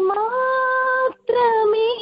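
A woman singing a gospel song solo, heard over a telephone line: one long held note, a brief breath about a second in, then the next phrase begins.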